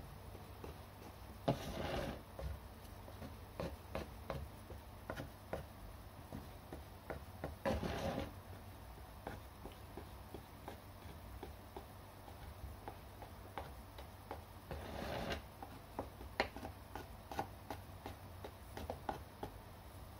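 Faint scraping and light tapping of a small modelling tool blending a clay coil into a bowl's base, with three short, louder rubbing sounds spread through.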